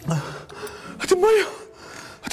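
A man gasping hard, then calling out "give me" in a strained voice. His mouth is burning from food heavily spiced with chilli, and he is begging for water.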